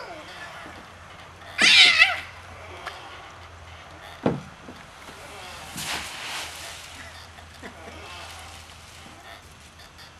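A young child's brief, high-pitched squeal about two seconds in, then, around six seconds, a soft rustle of dry leaves as a toddler comes off a plastic slide into a leaf pile.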